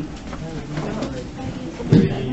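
Indistinct, low voices talking in a room, with a sharp knock near the end.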